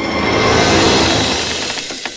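A rushing whoosh of noise, a sound effect, that swells to a peak about a second in and then fades away.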